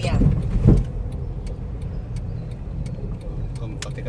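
Car cabin road noise, a steady low rumble, with a regular ticking about two to three times a second from the turn signal as the car nears a right turn. A brief laugh and voice are heard at the start.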